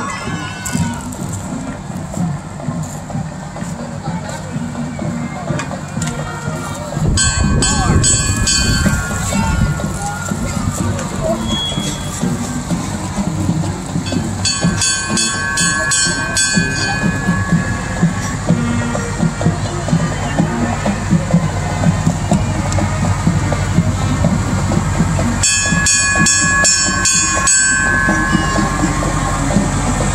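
Parade vehicles rolling slowly past with engines running, a steady low rumble that grows heavier partway through. Three times, about 7, 14 and 25 seconds in, a pulsing horn-like tone sounds for two to three seconds.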